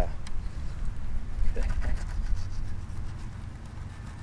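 Fillet knife cutting through a bluegill on a plastic fish-cleaning board, faint scraping and cutting under a low rumble of wind on the microphone that fades near the end.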